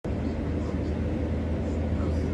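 Steady low drone of an aircraft in flight, heard from inside the cabin.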